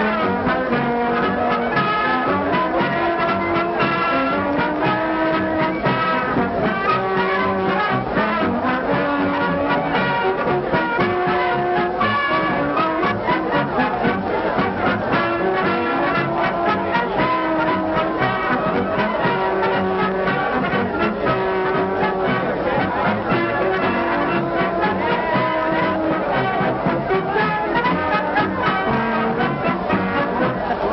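Brass band music playing a continuous melody of held notes, steady in level throughout.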